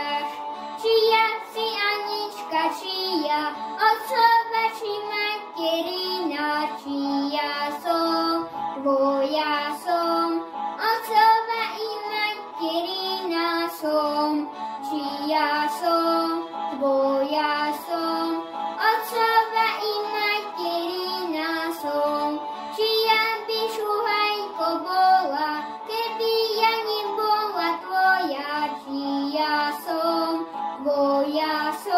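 A young boy singing solo, in a continuous run of sung phrases.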